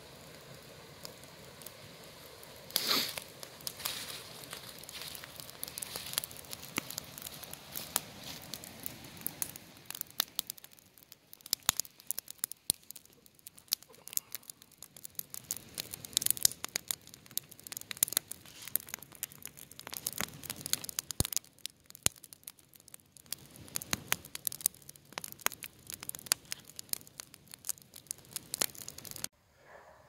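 Wood fire burning in a cut-open steel oil drum to make biochar, crackling with many sharp pops scattered throughout and a louder rush of flame about three seconds in.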